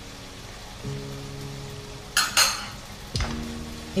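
Turkey, mushrooms and shallots sizzling faintly in a frying pan over high heat, under soft background music with held notes. About two seconds in there are two quick utensil scrapes or clinks as the tomato paste is stirred in.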